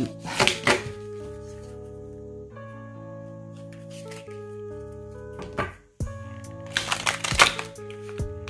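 Hand shuffling of a deck of large oracle cards: short bursts of riffling and shuffling just after the start and again near the end. Under it runs steady background music with long held tones.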